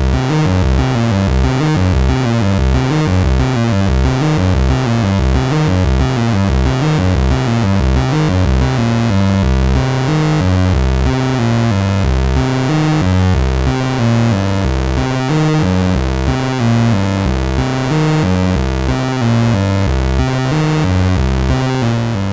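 Sub-oscillator tone from an AniModule TikTok Eurorack clock divider, dividing down a VCO's pulse wave. It plays a run of low synth notes that change pitch several times a second. It has a gritty, digital-sounding edge.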